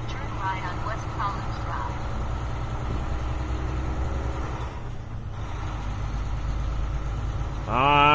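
A semi truck's diesel engine running steadily at low road speed, heard from inside the cab as an even low drone.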